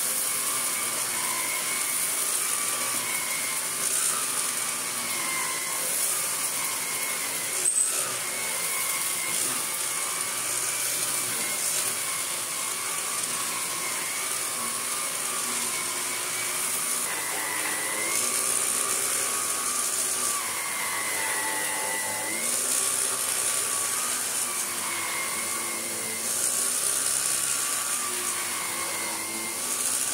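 Electrolux Lux Auto G cylinder vacuum cleaner running with its electric power head, pushed back and forth over a carpet. It makes a steady motor whine whose pitch wavers and dips with each stroke. There is a single sharp knock about eight seconds in.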